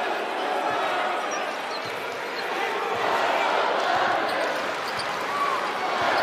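Basketball arena crowd noise, a steady murmur of many voices, with the thud of a basketball being dribbled on the hardwood court about once a second.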